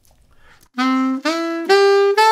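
Selmer Mark VI alto saxophone playing the opening of an R&B line slowly as a rising arpeggio on concert C, E and G, each note held about half a second, starting about a second in.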